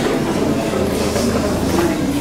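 A man's voice amplified through a public-address system in a reverberant hall, over a steady low hum and rumble.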